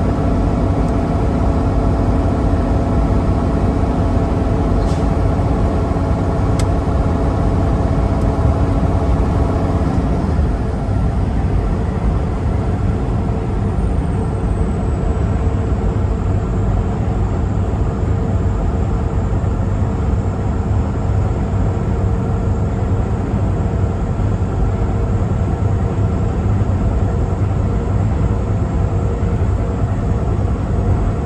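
Semi-truck cruising at highway speed, heard from inside the cab: a steady low engine drone with road noise. About ten seconds in, the engine's hum changes and eases slightly.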